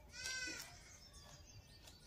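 A goat bleats once, a short call that rises and falls in pitch, a fraction of a second in.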